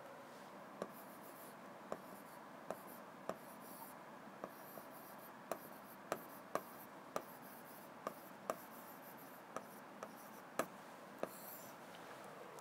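Marker pen writing on a whiteboard: a run of short taps and faint scratchy strokes, about one or two a second.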